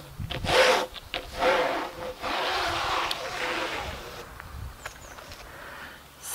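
Damp cloth rubbing over the resin drills of a sealed diamond painting: a couple of short wiping strokes, then a longer one lasting about two seconds.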